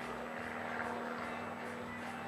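Steady drone of a small propeller airplane, the kind flown over for banner advertising, with faint music underneath.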